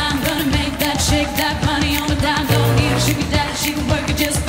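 A woman singing a pop song live into a handheld microphone over a backing track with a steady dance beat.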